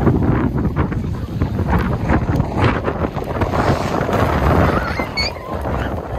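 Wind buffeting the microphone, a loud steady rumble, over small waves washing onto a sandy shore.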